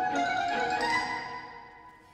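Symphony orchestra playing, led by bowed strings; the phrase dies away over the second half.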